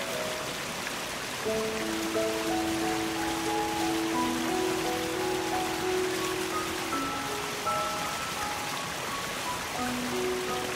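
Steady rushing water of a waterfall under slow, gentle piano music. The melody pauses briefly near the start and comes back about a second and a half in, with a long low note held through the middle.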